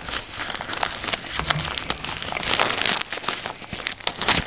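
Plastic wrapping crinkling and rustling, with many small irregular clicks and crackles, as headphones are handled in and out of their carrying pouch.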